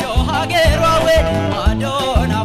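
Male singer performing live over a band of electric guitar, drum kit and keyboard. His voice wavers through ornamented runs and holds one long note about a second in, over a steady kick-drum beat of about two hits a second.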